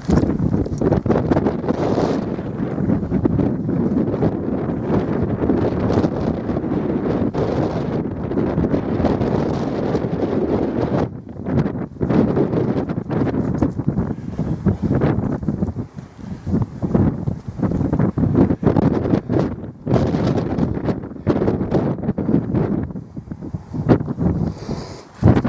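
Wind buffeting the microphone: a loud, low rumbling rush that holds fairly even for the first half, then comes and goes in gusts with short lulls.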